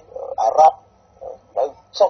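A voice speaking a few short, halting syllables with pauses between them, thin and phone-like in tone.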